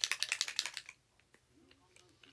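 A rapid, even run of light clicks or taps, about eleven a second, that stops just under a second in.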